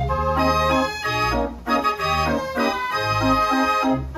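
Dutch street organ (draaiorgel) 'de Willem Parel' playing a tune on its pipes: a melody over held bass notes and accompaniment, with a brief dip about one and a half seconds in.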